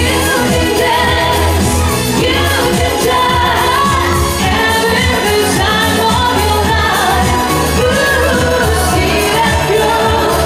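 A woman singing a pop song into a handheld microphone over amplified backing music with a steady beat.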